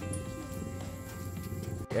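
Background music with steady held notes, breaking off abruptly just before the end.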